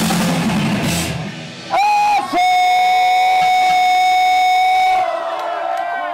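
A hardcore punk band's final drum-kit and cymbal hits end the song about a second in. A single steady high-pitched feedback tone then rings for about three seconds, and shouting voices come in near the end.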